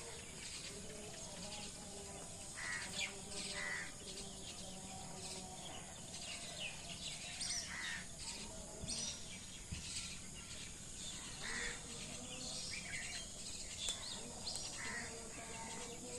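Many short bird calls and chirps, scattered and overlapping, over a steady faint rural background.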